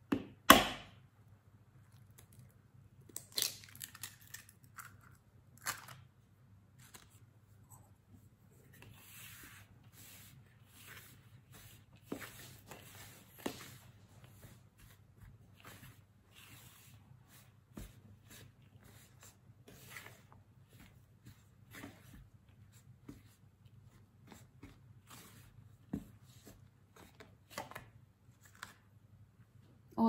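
Silicone spatula stirring and scraping dry cake mix and eggs in a plastic bowl, with scattered light taps and clicks, and a sharp knock about half a second in.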